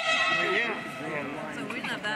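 A loud, high-pitched shout from someone at the pitch: the voice drops quickly in pitch, then holds one note for well under a second at the start. Quieter voices follow.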